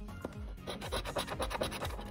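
A handheld scratcher tool scraping the coating off a paper scratch-off lottery ticket in quick, repeated strokes.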